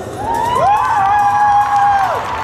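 Entrance music playing a long held note that slides up, holds and drops away, with an audience cheering.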